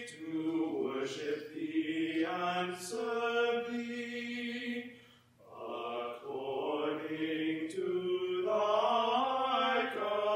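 Slow singing in long held notes that step from pitch to pitch, with a brief pause about five seconds in.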